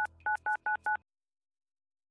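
Touch-tone telephone keypad beeps, each a short two-note tone, as the all-threes phone number is keyed: one beep, a brief pause, then four quick beeps. The beeps stop about halfway through, followed by dead silence.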